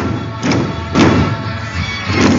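Music with heavy drum beats: three strong strokes in the first second, the third the loudest, over steady sustained tones.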